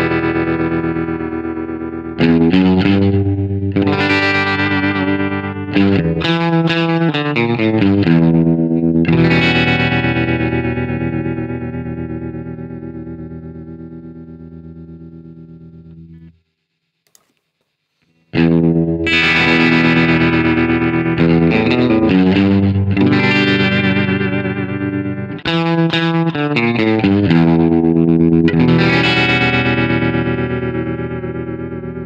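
Electric guitar, a Fender Stratocaster, played through a modelled Fender Super Reverb amp with its tremolo on. A few chords are strummed and the last one rings and pulses as it fades. It cuts off suddenly, and after about two seconds of silence the same phrase is played again.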